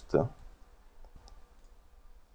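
A last spoken syllable at the very start, then quiet room tone with a couple of faint computer mouse clicks about a second in.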